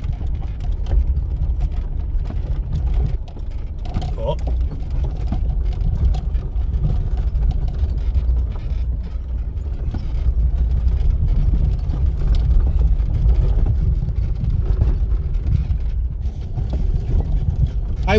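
Inside a 1990 Lada Samara (VAZ-2108) rolling slowly downhill over a broken, rocky gravel track: a steady low rumble from the car and tyres, with frequent knocks and rattles as the suspension and body go over loose rocks.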